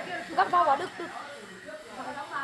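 Speech only: a few indistinct words from people talking in the first second, then quieter.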